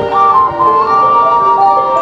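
High school marching band playing a slow melody of long held notes that step from pitch to pitch.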